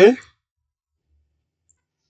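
The end of a spoken "okay", then near silence.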